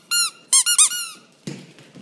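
A squeaky toy ball being chewed in a French bulldog's mouth: several short, high squeaks in two quick bursts in the first second, then a single thump about a second and a half in.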